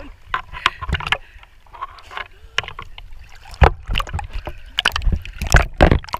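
Sea water splashing and sloshing against a camera held at the surface, with irregular sharp slaps of water on the housing. The slaps are loudest in the second half, as the camera goes under.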